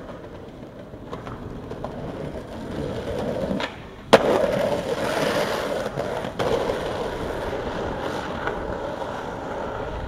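Skateboard wheels rolling on street asphalt, with one sharp clack of the board about four seconds in. After the clack the rolling is louder, as the board runs fast down a steep street.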